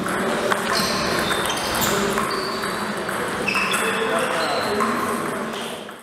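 Table tennis ball clicking off bats and table in an echoing hall, over background voices. The sound fades out near the end.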